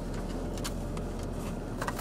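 A few faint clicks of a plastic powder compact being handled and opened, twice, over a steady low hum inside a parked car.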